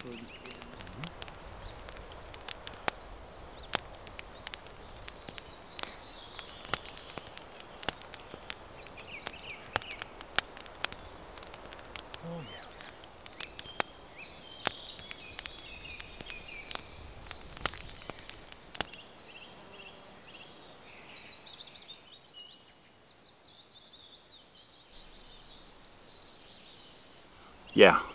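Wood cooking fire crackling with irregular sharp pops, birds chirping in the background. About two-thirds of the way through the crackling stops and only quiet outdoor ambience with a few bird calls remains.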